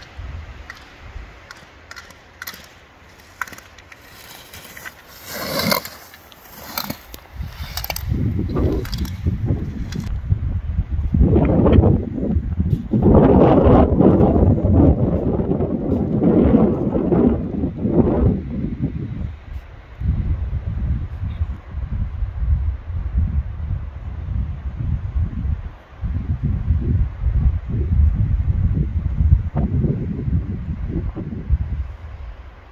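Slalom skis scraping and carving on hard snow as a racer passes close by, with a few sharp clicks in the first seconds. From about eight seconds in, loud gusty wind rumble on the microphone takes over.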